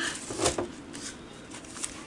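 Notebooks being lifted out of a plastic bin and handled: a few short knocks and rustles, the loudest about half a second in.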